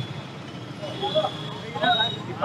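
Street background in a pause between speech: a steady traffic hum, with brief faint voices from people nearby about a second in and again near the end.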